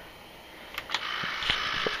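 Quiet handling noise: a few light clicks and a soft rustle, starting about three quarters of a second in.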